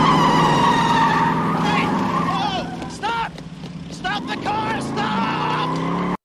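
Car tires squealing as a car speeds away and swings through a turn, over its running engine. The squeal fades about two and a half seconds in, and voices shout over the fading engine.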